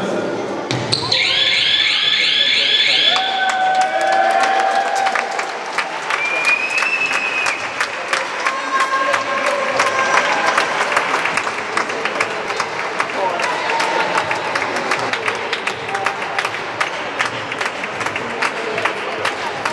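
Indoor sports-hall sounds of a youth handball game. A run of high squeaks about a second in fits sneakers on the wooden floor, followed by many sharp knocks of a ball bouncing and feet on the court, with children's voices echoing in the hall.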